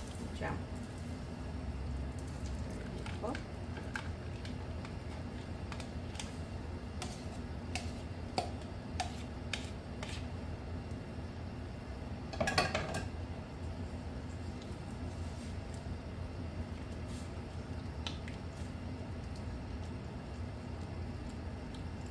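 Utensil scraping diced cooked meats out of a bowl into a stockpot of beans: scattered light scrapes and clicks, with a louder clatter about twelve seconds in, over a steady low hum.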